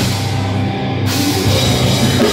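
Hardcore band playing live through a PA, heard from the crowd: distorted guitars, bass and drums. The cymbals drop out for about the first second and come back in.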